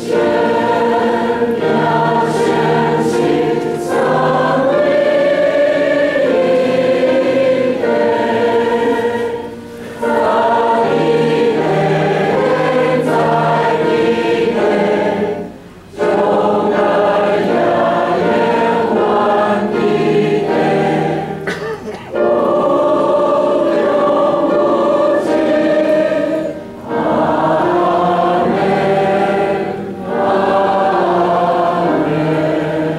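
A church choir singing a slow anthem in sustained phrases, with short breaks between phrases every few seconds.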